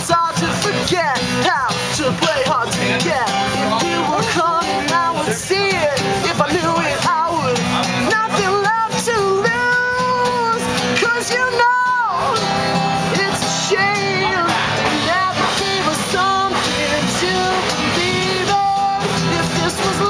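A man singing with a strummed acoustic guitar: a live solo performance of a pop-rock song. A long note is held about ten seconds in.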